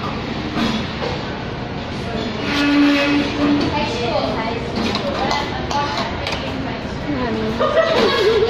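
Restaurant dining-room background noise: a steady rumble with faint voices and chatter, and a brief held tone about three seconds in.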